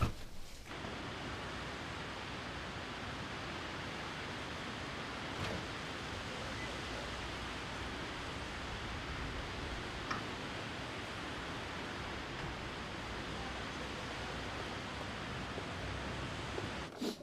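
Steady rush of splashing water from fountain jets, starting just under a second in.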